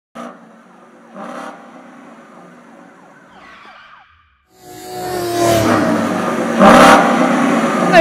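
Car sound effect: after quieter sounds and a brief break, a car engine swells up loudly from about halfway and speeds past, its pitch slowly falling.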